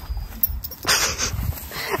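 A horse gives one short breathy snort through its nostrils about a second in, over a low rumble.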